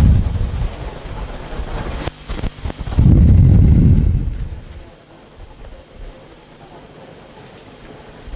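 Low, muffled rumbling noise in two swells, the louder one about three seconds in and dying away by five seconds, with a few sharp knocks just before it; after that only a faint steady background noise.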